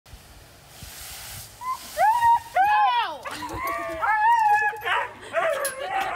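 Husky yowling and howling in a run of drawn-out, bending protest calls while being hosed down. A brief hiss of hose spray comes before them.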